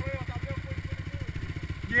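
Off-road vehicle engine idling with a fast, even beat that holds steady.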